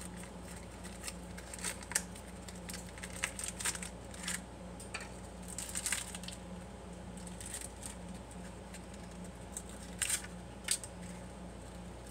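Paper cupcake liners being pulled from a new pack and separated, with soft crinkling and scattered light clicks, the loudest a little before the end.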